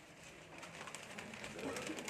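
Faint, indistinct voices in a room, with low cooing calls like those of a bird.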